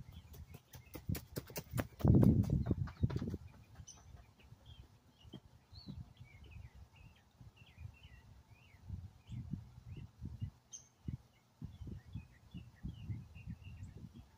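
Small birds chirping outdoors in short, scattered high calls. A quick run of sharp clicks and a loud low rush sound about a second in, and soft low thumps come and go later.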